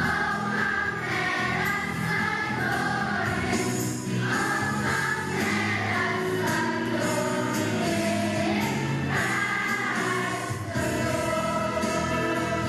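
Large children's choir singing in unison over musical accompaniment.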